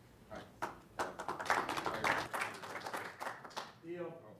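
Audience applause: scattered claps about a third of a second in build to a full round and die away near the end.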